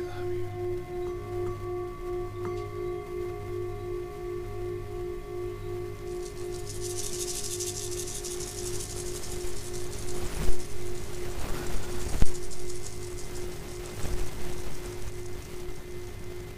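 Metal singing bowls ringing with several steady tones that pulse slowly, with another bowl joining about a second in. A high shimmering rustle comes in around six seconds in, then a few sharp knocks near the end, the loudest about ten and twelve seconds in.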